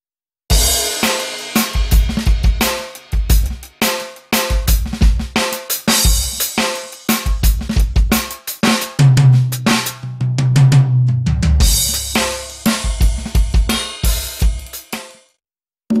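Drum groove played on a Roland TD-4KX electronic drum kit, its module sounding kick, snare, hi-hat and cymbals. It starts about half a second in, has a stretch of low, ringing tom hits in the middle, and stops just before the end.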